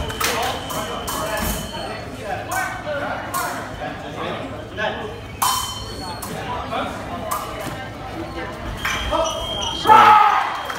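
Fencing bout: quick footwork stamps and light blade clinks on a metal piste, with the electronic scoring box giving a steady high beep for about a second and a half at the start and again near the end, signalling touches. Background chatter in the hall.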